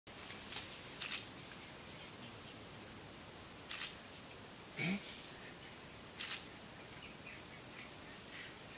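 Steady, high-pitched chorus of forest insects, with three short sharp clicks spaced a couple of seconds apart.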